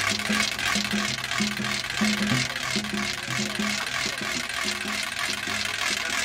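Korean pungmul folk percussion: janggu and buk drums played in a fast, even rhythm of about four strokes a second, with short repeated low drum tones under bright sharp strokes.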